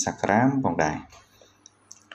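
A person speaking for about the first second, then a short pause with a couple of faint clicks near the end.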